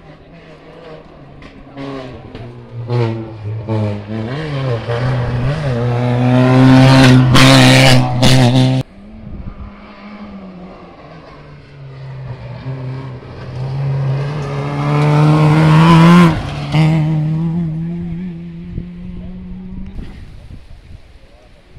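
A historic rally car's engine at full throttle, loudest about eight seconds in, lifting off abruptly near nine seconds, then accelerating again with a steadily rising pitch and a gear change about sixteen seconds in.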